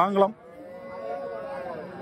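A calf mooing: one long, steady call that starts about half a second in and fades near the end, right after a man stops talking.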